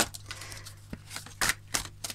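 A deck of oracle cards being handled and shuffled by hand: a few sharp card clicks and taps, the loudest about one and a half seconds in, over a steady low hum.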